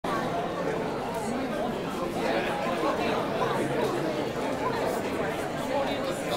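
Indistinct chatter of many people talking at once in a conference hall audience, a steady murmur of overlapping voices with no single speaker standing out.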